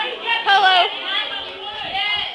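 Several young people's voices chattering, with one voice calling out loudly about half a second in.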